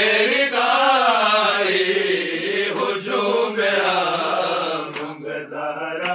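Men's voices chanting an Urdu noha, a Shia mourning lament, in a slow wavering melody without instruments.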